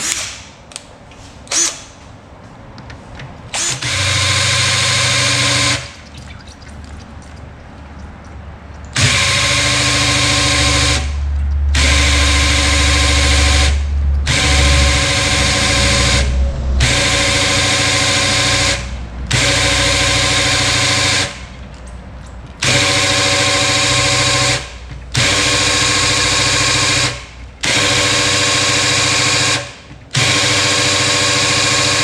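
Cordless drill turning an oil-pump priming tool to pump oil through a freshly rebuilt V8 and prime it before first start. It runs at a steady pitch in repeated stretches: one short run about four seconds in, then from about nine seconds a long run followed by runs of two to three seconds with brief stops.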